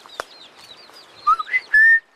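A person whistling to call a dog: a short rising whistle, then a louder held whistle note near the end that stops abruptly. Faint bird chirps run underneath.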